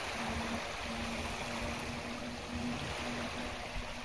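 Small waves lapping near the microphone, with wind buffeting it, under the faint steady drone of a Sea-Doo jet ski engine running far out on the water.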